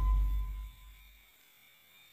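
A low hum fades away over about the first second, leaving near silence for the rest.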